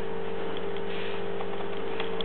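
EMFields Acoustimeter's speaker giving a steady electrical buzz and hiss, a low hum with a higher tone over it, as it picks up the microwave oven's radiation about four metres away.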